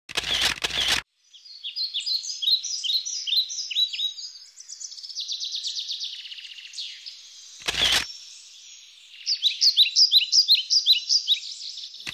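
Birds singing in runs of quick, high, falling chirps, with a faster rattling series of notes in the middle. A camera shutter clicks twice in quick succession near the start and once more about eight seconds in.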